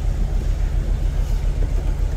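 A truck's engine running steadily at low revs while the truck sits stuck in a riverbed's soft bottom.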